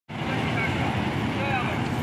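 Steady rumble of road traffic with wind on the microphone, and faint voices over it.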